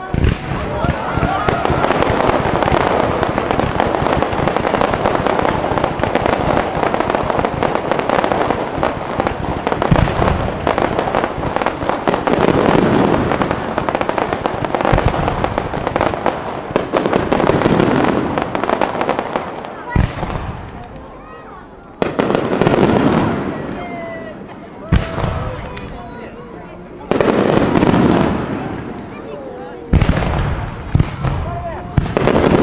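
Fireworks display: a dense barrage of rapid crackling and popping launches for about the first twenty seconds, then several separate sharp bangs, each trailing off, with quieter gaps between them.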